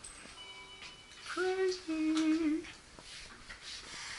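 A voice humming "mm-hmm" in two held notes, the second lower and wavering, in a small enclosed room. Just before it, a faint steady high tone sounds for under a second.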